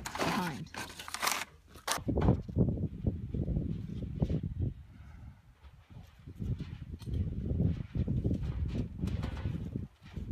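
Wind buffeting the microphone outdoors: an uneven, gusting low rumble that starts about two seconds in and swells and dips for the rest of the time.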